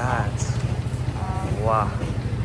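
A small engine running steadily with a low, even rumble, and brief voices twice, near the start and near the end.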